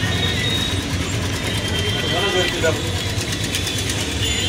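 Busy street traffic: engines of motorbikes and auto-rickshaws running steadily as they pass, with faint voices of people nearby.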